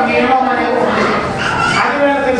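A man preaching into a microphone, his amplified voice speaking continuously and loudly.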